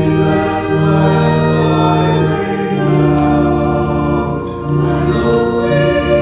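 Organ and voices singing a hymn together, in slow held chords that change every second or two.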